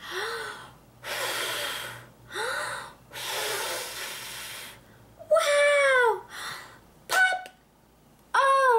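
A woman breathing in sharply and blowing out long breaths, twice, as if blowing up a big pretend bubble. She follows with a voice sliding down in pitch and a short pop near the end.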